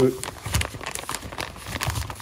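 Plastic film on a frozen food tray crinkling and crackling as hands work at it, tearing a corner open to vent it for the microwave.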